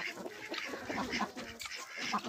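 Faint, short calls from farmyard fowl, heard a few times.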